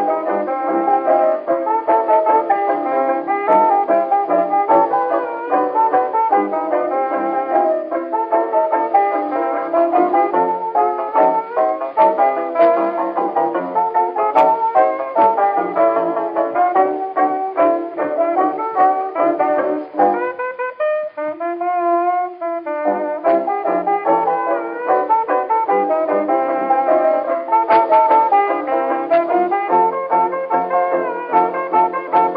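A 1923 acoustically recorded dance-orchestra fox trot played from a 78 rpm shellac record: a brass-led band plays a steady dance rhythm, with no high treble. About twenty seconds in, the band drops out and a single instrument holds a wavering note for about two seconds before the full band comes back in.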